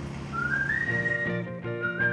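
Background music: a whistled melody over plucked guitar chords, the guitar coming in about a second in.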